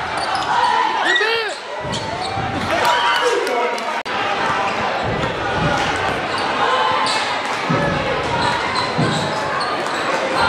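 A basketball bouncing on a hardwood gym floor as a player dribbles, with sneakers squeaking on the court. Voices echo in the large gym.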